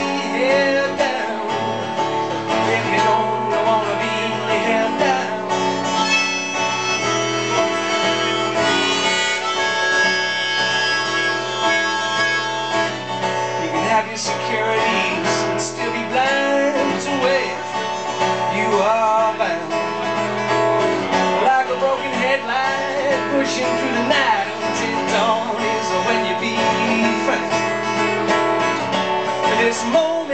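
Live acoustic guitar music, an instrumental passage between sung verses, with held notes and a bending melody line over a steady bass.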